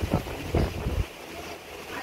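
Cloth being shaken out and handled close to the microphone: a few low thuds and rustles in the first second, then quieter.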